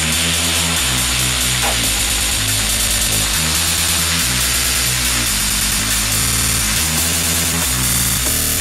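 Techno music: a harsh, noisy synth texture over a bass line stepping between notes about every second.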